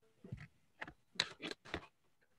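About five faint, short clicks or taps, spread unevenly over two seconds on an otherwise quiet line.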